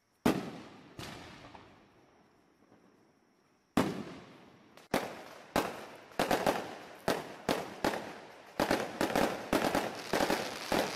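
A series of sharp outdoor bangs, each echoing away. Two come about a second apart near the start, then after a pause they return and come quicker and quicker, several a second by the end. A faint steady high tone is heard between the first few.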